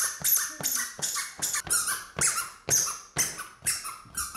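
Indoor foam pogo jumper bouncing on a hardwood floor, about two bounces a second, each bounce giving a short, sharp high squeak.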